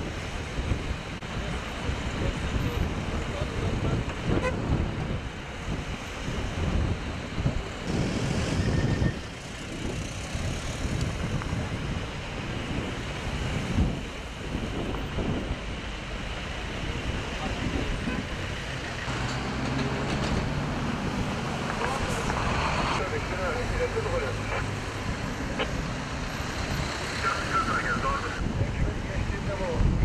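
Highway traffic passing: cars and vans driving by with a fluctuating rumble of engines and tyres, some passes louder than others, and a steady engine hum for several seconds past the midpoint.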